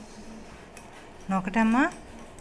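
A short, untranscribed word or sound from a person's voice, rising in pitch, about a second and a half in; it is the loudest thing here. Before it, only a faint low hum with a few faint light taps.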